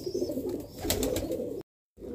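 Domestic pigeons cooing low, with a few brief clicks about a second in; the sound cuts off abruptly near the end.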